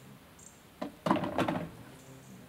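A brief cluster of knocks and clatter, starting about a second in and lasting about half a second, after a single click just before it.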